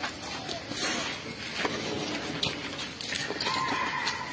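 Young wild Asian elephant calves giving short calls at close range, with clicks and rustling from the calf's body and bamboo leaves against the microphone.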